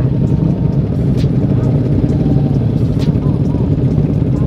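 Many motorcycle engines idling together in a stopped pack, a steady low rumble, with faint voices in the background.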